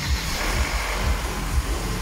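Mercedes-Benz M271 four-cylinder petrol engine running steadily just after starting. The timing chain and lower tensioner are freshly replaced, and it runs quiet with no chain rattle: the oil system primed almost instantly.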